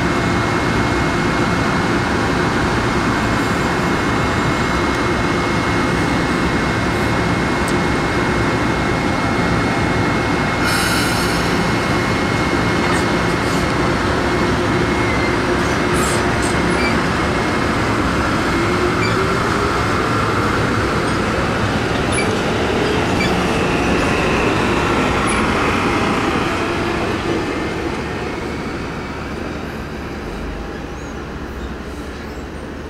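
Metro-North M-2 electric multiple-unit cars rolling past at close range, a steady rumble of wheels on rail with a thin high tone over it in the first half. About two-thirds of the way through a whine rises in pitch as the train gathers speed, and the sound fades over the last few seconds.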